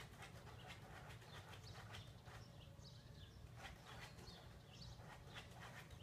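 Faint, irregular scratching and clicking as a dog paws and noses at a mat on a metal frame, digging after something underneath, with faint high bird chirps now and then.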